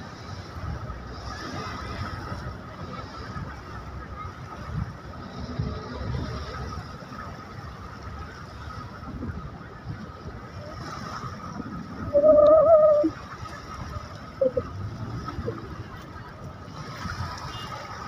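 Steady outdoor background noise with a faint steady high tone, broken about twelve seconds in by a single loud honk lasting under a second, like a horn.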